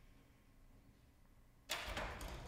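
Near silence of a hushed theatre, then a sudden hiss-like noise starts near the end.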